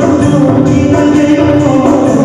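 Live band music: a man singing a Telugu song into a microphone over electronic keyboard and a steady rhythm accompaniment.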